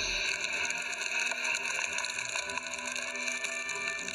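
Anime episode soundtrack playing without dialogue: a steady, sustained sound with several held tones.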